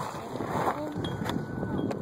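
Wind rushing over a phone's microphone on a moving bicycle, with a few sharp clicks from the ride.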